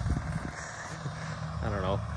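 Steady low drone of the 10x10 Sherp ARK's diesel engine running at a distance, with a short call from a voice near the end.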